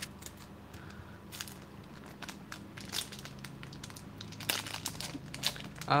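Foil wrapper of a 1995-96 Fleer basketball card pack crinkling in the hands as it is picked up and opened. It makes scattered sharp crackles that get busier in the last second or so.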